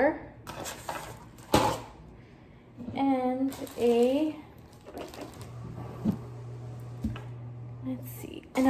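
Sharp knocks and handling noises of craft supplies being moved on a wooden table: one clear knock about a second and a half in, smaller ones later. In the middle, two short vocal sounds from a woman are louder than the handling.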